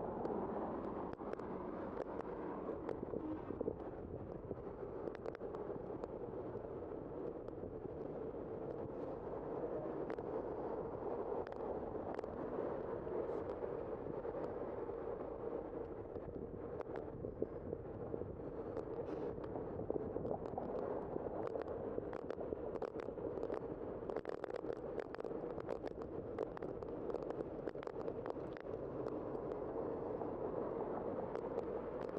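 A bicycle riding along a city road: a steady rush of wind and tyre noise with many small ticks and rattles, more of them in the second half.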